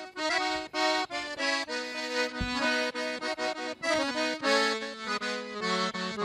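Accordion playing a traditional gaúcho tune solo: a melody over chords in short, separated, rhythmic notes, with a few longer held bass notes.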